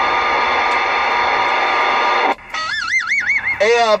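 CB radio receiver hiss and static with steady whining tones. It cuts off about two-thirds of the way in and gives way to a warbling electronic tone that wobbles up and down about four times a second for about a second. The hiss returns just before the end.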